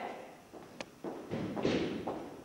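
Noises of movement on a wooden stage: a single sharp click, then about a second of scraping and shuffling.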